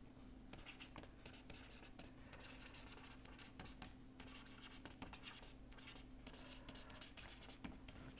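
Faint scratching of a stylus writing on a pen tablet, in short irregular strokes, over a low steady hum.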